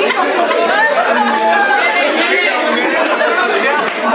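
A group of young men all talking and shouting over one another at once, with laughter among the voices: a rowdy, overlapping babble of chatter.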